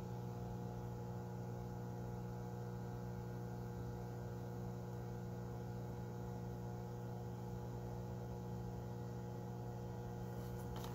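Steady low electrical hum made of several constant tones, unchanging, with no handling noises.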